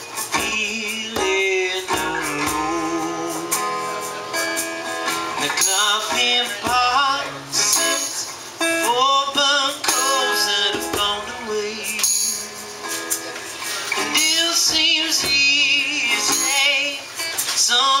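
Live acoustic band: a man singing over a strummed acoustic guitar, with hand percussion keeping time.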